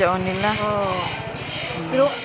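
A small motorcycle engine running steadily at idle, with a drawn-out voice over it in the first second.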